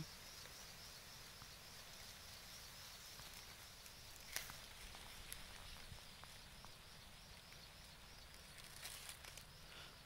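Near silence: faint outdoor field ambience, with one short click about four seconds in.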